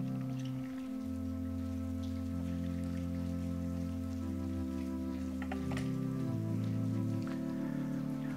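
Soft background music of sustained keyboard chords, each held for about a second or more before shifting slowly to the next, with a couple of faint light clicks about two-thirds of the way through.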